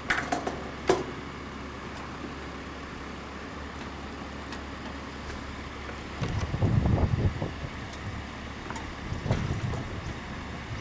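Handling noise from a compressed-air-foam backpack unit being fitted with its hose on a metal table: two sharp knocks in the first second, then low bumping and rustling from about six seconds in and again near the end, over a steady faint background hum.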